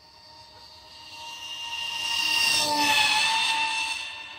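Motors and propellers of a DIY VTOL RC plane in flight, a steady whine that grows louder as it passes close. It is loudest about two and a half to three and a half seconds in, and its pitch dips as it goes by.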